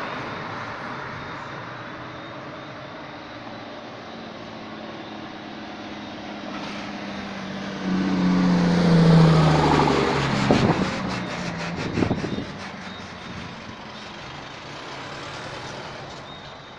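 Road traffic passing on a street. About halfway through, one vehicle passes close and is the loudest sound, its engine pitch dropping as it goes by. Two sharp knocks follow as it moves away.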